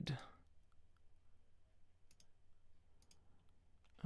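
Near silence with a few faint clicks, one pair about two seconds in and another about three seconds in.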